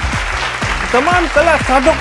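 Applause over background music, then a man's voice starting about a second in.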